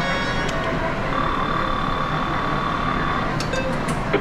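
Sigma Hot Lines video slot machine's electronic sounds over a steady game-centre din: a jingle ends just after the start, then a steady electronic tone holds for about two seconds, followed by a few sharp clicks near the end.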